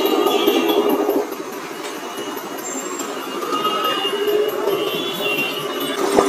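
KTM motorcycle engine running at low speed in slow, congested street traffic, mixed with the general noise of surrounding vehicles and some held tones like distant horns; it drops quieter about a second in, then slowly builds again.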